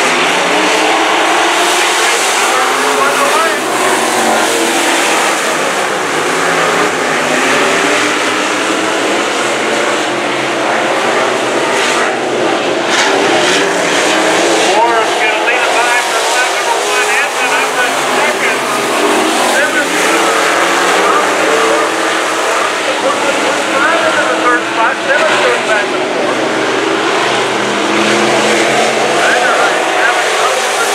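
A pack of IMCA sport modified dirt-track race cars with V8 engines racing together, the many engines overlapping and rising and falling in pitch as the drivers lift and get back on the throttle through the turns.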